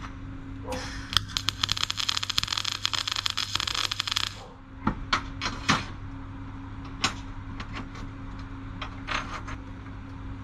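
MIG welding arc crackling for about three and a half seconds, a short weld on steel, starting and stopping abruptly. Afterwards come scattered clanks and taps of steel parts being handled, over a steady low hum.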